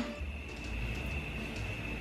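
Steady low hum with a faint, thin high-pitched whine held level throughout: kitchen room tone.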